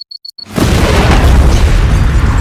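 A single high electronic beep quickens into four rapid beeps. About half a second in, a car explosion goes off: very loud and sudden, with a heavy low rumble that carries on.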